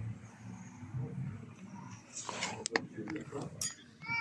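Quiet restaurant-terrace background: faint murmur of distant voices, with a few light clicks and clinks a little past halfway through.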